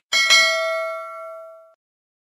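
Notification-bell chime sound effect: a bright electronic ding struck twice in quick succession, ringing on and fading out in under two seconds.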